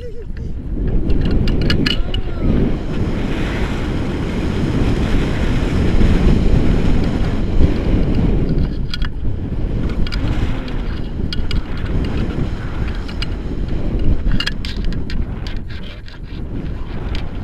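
Airflow buffeting the microphone of a selfie-stick camera during a tandem paraglider flight: a loud, steady, low rushing noise, with a few scattered clicks.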